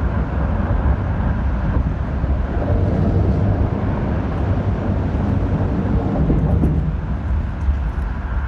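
Field-recording soundscape of a river-valley mill town: a steady, dense low rumble with a noisy haze above it, and a few faint ticks near the end.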